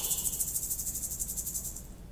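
A shaker shaken rapidly, about a dozen crisp high pulses a second, stopping shortly before the end.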